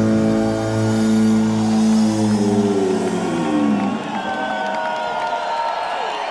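A live rock band's final sustained electric-guitar chord rings out, then slides down in pitch and dies away about four seconds in. An arena crowd cheers after it.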